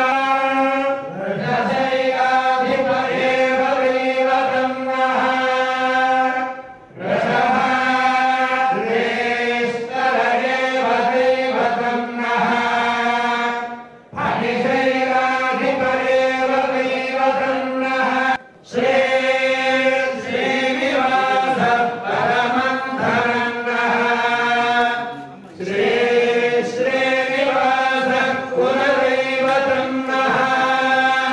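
A group of voices chanting in unison in a Hindu temple, holding long, steady-pitched lines in phrases of several seconds, each broken by a short pause for breath.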